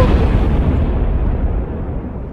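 The tail of an explosion sound effect, a deep, noisy blast that fades steadily over the two seconds.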